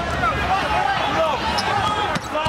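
Arena crowd murmur with a basketball bouncing on the hardwood court during live play.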